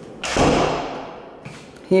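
An interior door being moved: a sudden thud and rush of noise about a quarter-second in, fading away over about a second.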